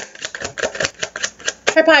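A deck of tarot cards being shuffled by hand: a quick, uneven run of card clicks and slaps. A woman's voice says "Hi" near the end.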